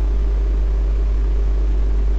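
Steady low hum with a faint hiss and no other sound, the constant background noise of the recording during a pause in speech.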